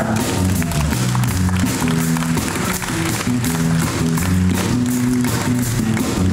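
Blues-soul band playing live, with electric guitars, a stepping bass line and drums in an instrumental passage.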